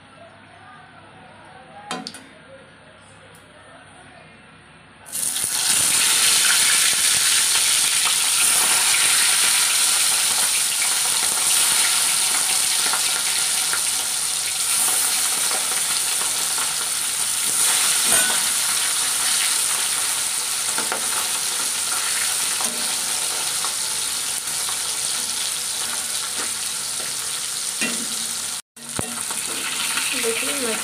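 Small whole tengra fish frying in hot mustard oil in a kadhai: a loud, steady sizzle that starts suddenly about five seconds in as the fish go into the oil, after a quiet stretch with a faint clink. The sizzle breaks off for an instant near the end.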